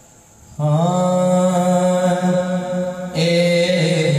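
A man's voice chanting a long, held note of a naat, with no drum strokes beneath it, entering about half a second in after a brief hush. The tone grows brighter about three seconds in.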